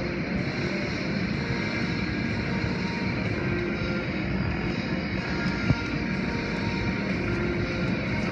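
Automatic tunnel car wash running: a steady wash of water spray and machinery noise, with music playing underneath. A single sharp knock comes about halfway through.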